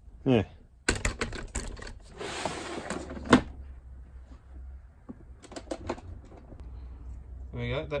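Clear plastic storage tub being opened and rummaged through: knocks of the plastic lid and box and the rattle of tools and cables inside, with the sharpest knock about three and a half seconds in and a few more clicks a little later.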